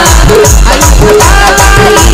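A Gondi song in a loud DJ remix, with a heavy, steady electronic kick-drum beat and a melody line over it.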